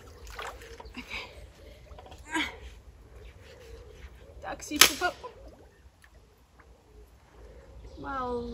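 A long-handled digging tool being driven into a pond's silt bed under shallow water, with splashing and sloshing: the bottom is compacted hard. Two sharper strikes stand out, about two and a half and five seconds in, the second the loudest, and things go quieter after it.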